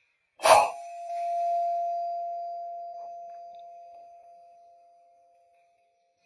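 A single sharp air rifle shot, followed straight after by a clear bell-like ringing tone that fades away over about five seconds.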